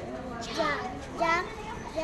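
Speech only: a child reading aloud, two short drawn-out syllables about a second apart.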